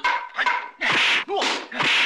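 Short, shrill yelps and cries from fighters in a staff fight, coming in quick succession and mixed with whooshing, hard-hitting bursts from the fight.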